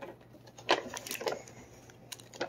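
A few brief clicks and rustles of hands handling the chip and its cardboard packaging, with a short exclaimed "no!" about a second in.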